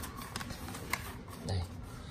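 Handling noise: a few faint, light clicks and knocks as a small wooden speaker cabinet is turned around on carpet.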